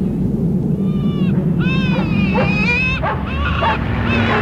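A steady low rush, like wind, under a run of short, high, arching animal-like calls. The first call comes about a second in, and several more follow, some overlapping.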